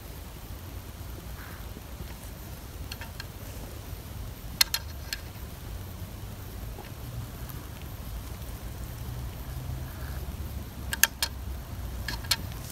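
Handling noises from a Victor wooden rat trap and a squeeze bottle of gel attractant: a few small sharp clicks, a pair about a third of the way in and a cluster near the end, over a low steady hum.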